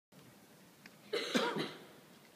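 A person coughs: one short, harsh cough lasting about half a second, a little over a second in, over low room noise.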